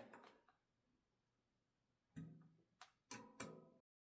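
Mostly near silence, with a few faint clicks and taps of small bolts and a hex key being handled on a resin 3D printer's metal vat frame, about two seconds in and again near the end. The sound cuts off just before the end.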